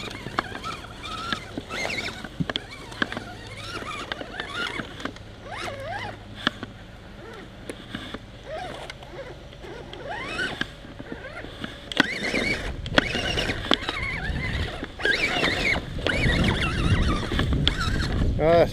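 RC rock crawler truck's electric motor whining up and down in pitch as the throttle is worked, with clicks and knocks from the truck's tyres and chassis against logs and branches. A low rumble builds in the last few seconds.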